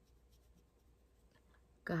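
Faint, soft scratching of an eyeshadow brush being loaded from the palette and stroked across the eyelid, in a quiet pause; a woman starts talking near the end.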